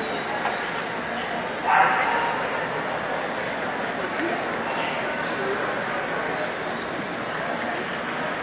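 A dog barks once, loudly, about two seconds in, over steady background chatter of many people's voices.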